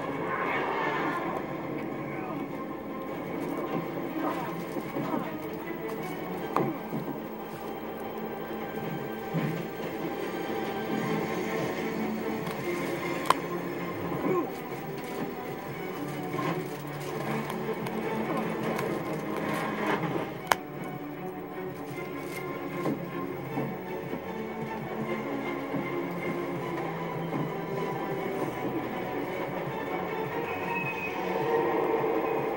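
Television soundtrack playing in the room, mostly music with some speech, with two sharp clicks standing out, about halfway and two-thirds of the way through.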